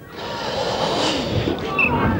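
Crowd noise from spectators at a Gaelic football match: a dense wash of shouting and voices that swells within the first half second, after a high tackle stops play.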